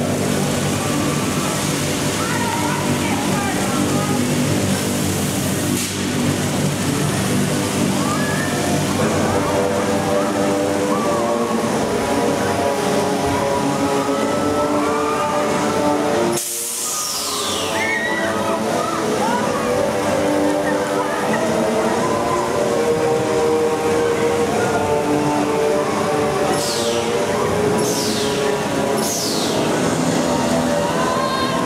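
Music from the Talocan top-spin ride, mixed with voices and water splashing from the ride's fountains. The sound breaks off suddenly about halfway. Quick, high falling swishes follow just after the break and again several times near the end.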